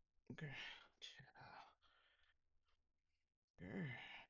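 Quiet, mumbled speech from a woman in two short stretches, near silence between them.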